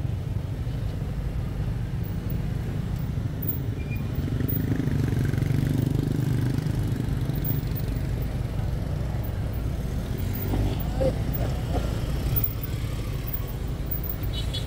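Motorbike engines and street traffic running in a steady low hum, swelling in the middle as a motorbike passes close.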